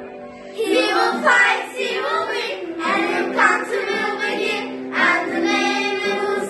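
A group of children singing a song together, the voices coming in strongly about half a second in.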